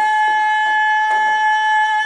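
A woman holds one long, high sung note while beating a hide hand drum with a beater in a steady rhythm, a little over two strikes a second.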